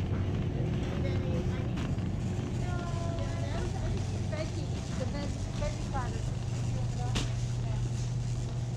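Shopping cart rolling over a concrete floor, a steady low rumble with a constant hum, and a single sharp knock near the end.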